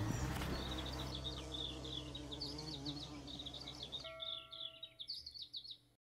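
Birds singing: quick runs of short, high chirps repeating all through, fading out toward the end.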